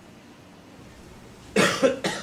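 Quiet room tone, then a man gives a short double cough about a second and a half in.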